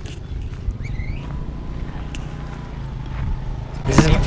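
Steady low rumble of wind and handling noise on a hand-held action camera carried while walking, with a few small clicks and a faint short rising chirp about a second in.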